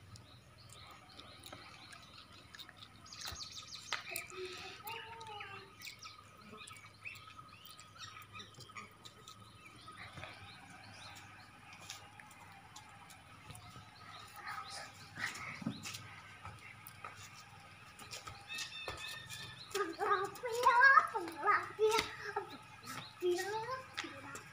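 Outdoor ambience with indistinct voices, loudest about twenty seconds in.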